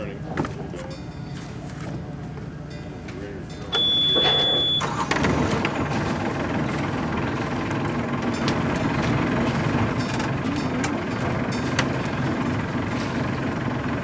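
The sailboat's rebuilt inboard diesel being started: about four seconds in a high warning buzzer sounds as the starter cranks, and a second later the buzzer stops and the engine runs steadily.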